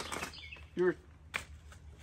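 A plastic bag crinkling as it is handled, with one sharp crackle a little past halfway, and birds chirping faintly in the background.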